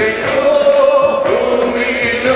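Group of men singing a Malayalam Christian worship song together into microphones.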